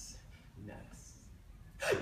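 A man's sharp intake of breath, a gasp, in a quiet pause, followed near the end by his voice breaking in loudly.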